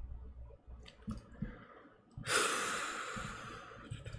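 A few light keyboard keystrokes, then about two seconds in a long breathy exhale, a sigh close to the microphone, that fades away over nearly two seconds.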